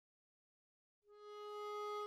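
Silence for about a second, then a harmonica begins one long held note, opening a Western-style piece of soundtrack music.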